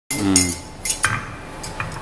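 Sharp metallic clinks as a spring safety valve on its adapter is set down and shifted by hand on the steel clamping table of a valve test bench, the loudest about a second in with a brief ring.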